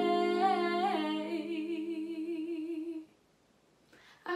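A woman singing one long held note with vibrato over a sustained chord on a digital keyboard; both stop about three seconds in.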